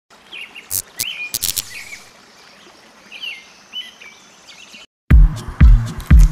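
Birds chirping, with a few sharp clicks, for the first five seconds. After a brief silence, an electronic music track starts with a heavy kick drum about twice a second.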